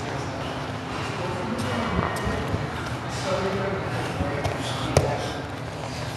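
Grapplers scrambling on foam mats: shuffling and thuds of bodies on the mat, with a sharp slap-like thump about five seconds in. Indistinct voices in the background.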